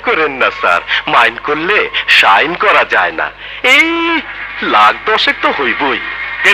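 Film dialogue: speech only, with one long drawn-out word about two-thirds of the way through.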